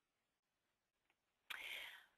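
Near silence, then a short, faint breath taken by the presenter about a second and a half in, just before speaking again.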